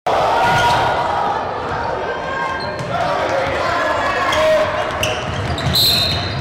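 Basketball being dribbled on a hardwood gym floor with repeated bounces, alongside scattered voices in an echoing gym.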